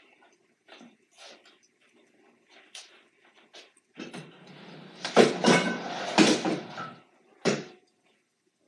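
Home gym equipment being handled: faint scattered knocks, then about four seconds in a few seconds of clatter and scraping with several sharp knocks, and one last knock near the end.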